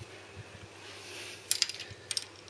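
Quiet workshop room tone, then, about a second and a half in, a few quick light metallic clicks as a spanner is fitted onto the jam nut of a motorcycle clutch-cable adjuster and starts to turn it.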